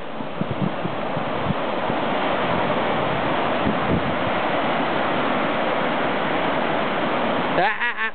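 Small ocean waves breaking and washing up a sandy beach: a steady rushing surf noise that swells slightly through the middle.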